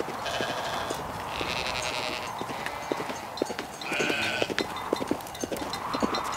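A flock of sheep bleating: three separate bleats, each under a second, over a steady scatter of small knocks.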